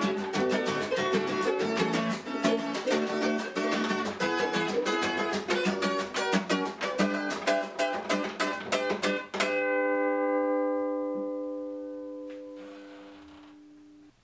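Acoustic guitar and ukulele strummed together in a steady rhythm; about nine and a half seconds in they stop on a final chord that rings out and fades slowly over the last few seconds.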